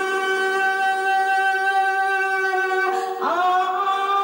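A woman singing karaoke into a handheld microphone, holding one long steady note for about three seconds, then breaking briefly and sliding up into another held note near the end.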